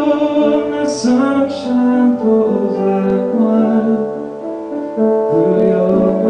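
Piano chords played on a Roland RD-700SX digital stage piano, with a man singing over them.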